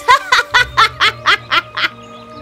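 A woman's gloating laugh, a quick run of about eight 'ha's at roughly four a second, stopping near the end.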